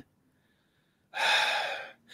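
After about a second of dead silence, a man draws one sharp breath in through his mouth, lasting under a second, as he pauses mid-sentence.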